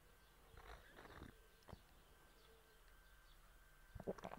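Near silence, broken by a few faint, brief sounds in the first second and a half, including one small click.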